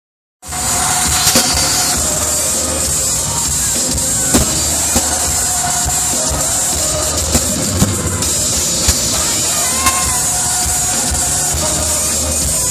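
Loud K-pop dance track played live over an arena sound system, recorded from within the audience, with a crowd of fans screaming along. The audio cuts in abruptly about half a second in and then stays at an even loudness, with sharp beats standing out.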